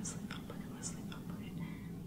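A woman whispering the name "Leslie" over and over under her breath, faint and hissy, over a steady low hum.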